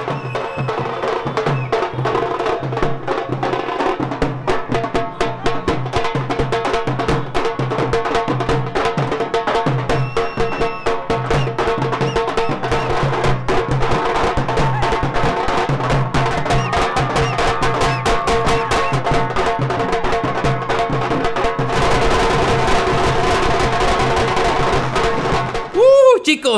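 Street drum band playing a fast, dense beat on sticks and large drums, with a steady held note running under it. Near the end a hissing crackle of firecrackers joins in.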